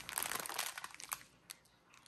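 Clear plastic packaging around a bundle of bagged diamond painting drills crinkling and crackling as it is handled. The crinkling dies away a little past halfway, with one last crackle near the end.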